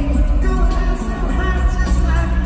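Live pop concert music from the arena stands: a singer over a loud band with heavy bass.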